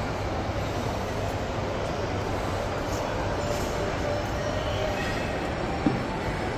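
Steady low rumble of indoor shopping-mall background noise, with a single short knock just before the end.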